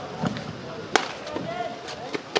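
A single sharp slap about a second in, from players' feet or hands hitting a kabaddi court mat during a raid, over faint voices.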